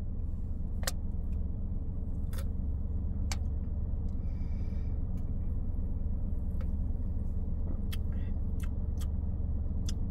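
Steady low hum of a car cabin, with a few faint clicks and soft sipping sounds from drinking out of aluminium cans.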